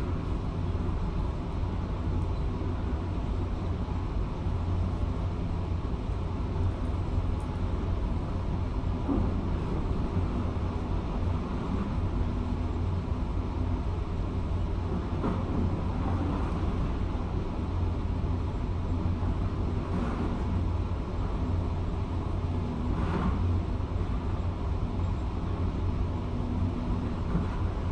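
Demolition excavator's diesel engine running steadily, a low rumble heard through an office window, with a few faint knocks from the work on the concrete.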